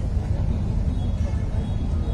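A steady low rumble of background noise during a pause in speech, with no clear speech in it.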